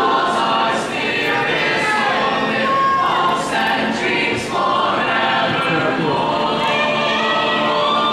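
A choir of many voices singing in harmony, holding long notes.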